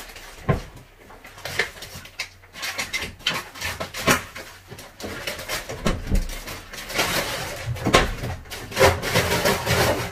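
Crinkling plastic food packaging and a cardboard box being handled, with scattered knocks and clicks, as frozen food is unpacked and put into a freezer.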